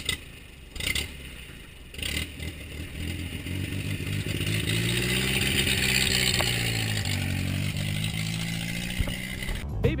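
Old Land Rover Series I engine starting up: a few clunks in the first two seconds, then the engine catches and runs, its revs rising and easing off again.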